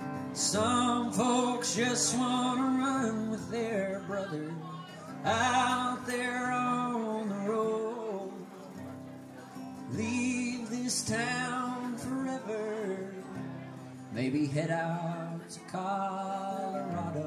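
Solo male singer with a strummed acoustic guitar playing a slow country-folk song live; four sung phrases, with the guitar carrying on alone in short gaps between them.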